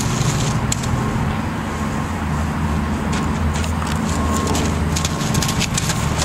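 A steady low engine drone with a constant hum; its deepest rumble drops away about five seconds in, with a few faint clicks over it.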